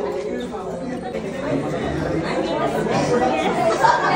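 Several people talking over one another: indistinct party chatter.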